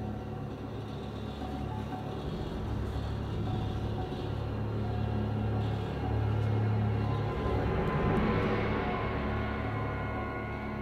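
Dark, droning ambient music with a steady low hum. It swells and brightens about eight seconds in, then eases back.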